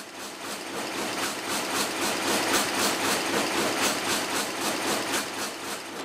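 Dornier rapier loom running at speed: a dense, even mechanical clatter with a rapid regular beat, each beat a weft pick carried across and beaten into the cloth.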